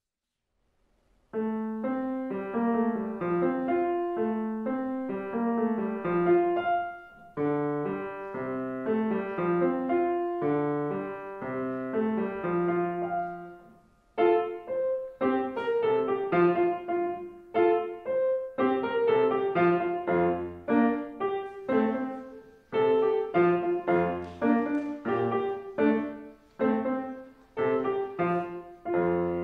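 Solo grand piano played by a young pianist. The playing begins about a second in with a flowing phrase that dies away about halfway through. It then resumes with shorter, more separated notes and chords.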